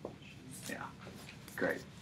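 Faint, murmured voices away from the microphone, with a short click at the very start.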